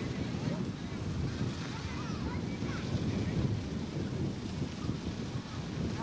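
Wind buffeting the microphone, a steady low rumble, with faint distant voices over it.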